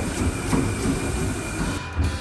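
Non-motorised curved treadmill turning under a person's running feet, its belt driven by the runner's own weight: a steady rumble with a regular beat of footfalls.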